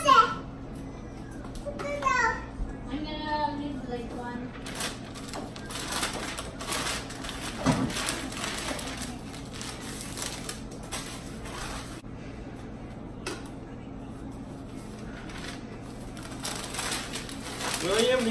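Packing paper rustling and crinkling in irregular handfuls as items are wrapped in it. A child's voice is heard briefly a couple of seconds in.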